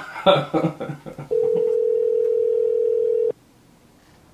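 A man laughs, then a telephone ringback tone sounds once: a steady two-second ring heard over the call while the line rings at the other end, stopping abruptly about three seconds in.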